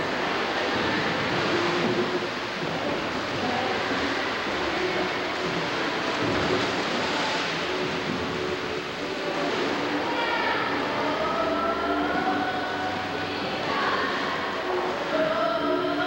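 Swimmers splashing and churning the water of an indoor pool, a steady rushing noise throughout, with voices calling out over it in the second half.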